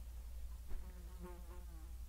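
A faint buzz with a wavering pitch, lasting about a second in the middle, over a steady low hum.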